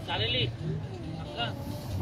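Background voices of people talking at a distance, over a low steady hum.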